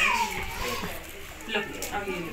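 Several voices talking at once in a room, a murmur of background chatter, with a high-pitched voice trailing downward at the very start.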